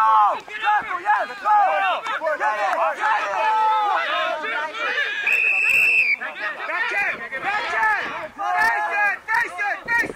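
Rugby players and sideline spectators shouting over one another, with a referee's whistle blown once about halfway through as a short, steady blast.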